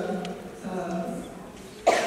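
Speech into a microphone, then a single sharp cough near the end, much louder than the talking around it.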